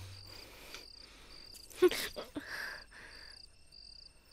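Crickets chirping in a steady, evenly spaced rhythm, a little under two high chirps a second. A brief sharp sound cuts in about two seconds in.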